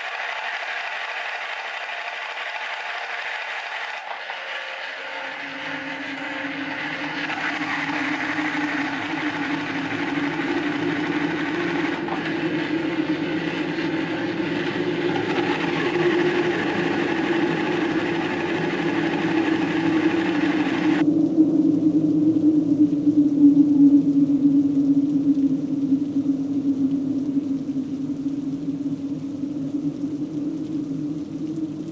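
Battery-operated tin toy robot running: its small motor and gears whir with a rasping buzz. A steady low hum comes in about five seconds in and grows louder, and the higher rasp cuts off suddenly about two-thirds of the way through.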